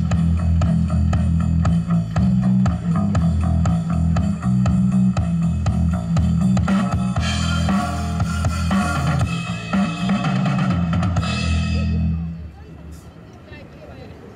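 Live rock band playing loudly through PA speakers: a drum kit keeping a steady beat under electric guitars. The music stops abruptly about twelve seconds in.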